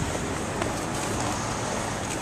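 Steady noise of road traffic going by on a nearby street.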